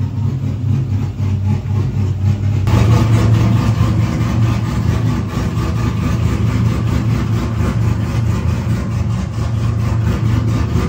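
Car engine idling steadily. About three seconds in the sound changes abruptly and becomes louder and rougher.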